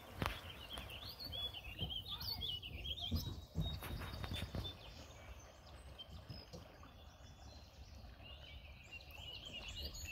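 A bird singing a quick warbling song in the first few seconds and again near the end, with a few faint knocks and a low rumble underneath.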